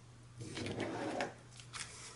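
A pen drawing a line across paper along a steel ruler: a faint scratching stroke about a second long. A brief rustle follows near the end as the sheet of paper is slid across the mat.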